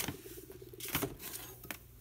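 Faint rustling and a few light clicks and taps as craft materials are handled on a tabletop.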